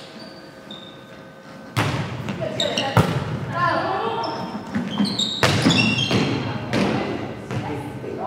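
Volleyball being struck during a rally, sharp hits echoing around a large gym: the first about two seconds in, another a second later, and a third near the middle, with players shouting between them.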